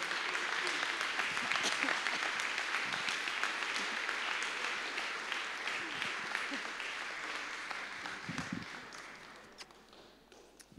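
A room-sized audience applauding, with some voices among the clapping; the applause thins out and dies away about a second before the end.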